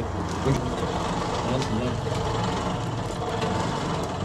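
Hand-cranked forge blower, a wheel driving a fan, whirring steadily and forcing air into the forge fire used to melt brass.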